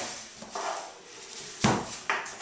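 A heavy hardback book set down on a wooden tabletop: a single sharp thud about one and a half seconds in.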